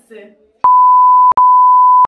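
Loud, steady, pure electronic beep tone, a bleep sound effect edited in. It starts about two-thirds of a second in, cuts out for an instant about halfway, then carries on.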